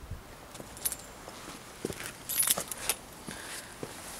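Cardoon leaves rustling and crackling as they are handled, with a short burst of light metallic jingling or clinking about two and a half seconds in.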